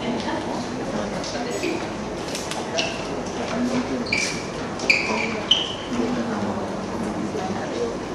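Several people talking at once in a large hall, a steady jumble of voices, with a few short high squeaks around the middle.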